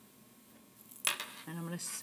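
Near silence for about a second, then a sudden rustle of cotton quilting fabric being handled on a table, followed near the end by the start of a woman's voice.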